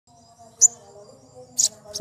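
Male olive-backed sunbird (kolibri ninja) giving two short, high-pitched chirps about a second apart.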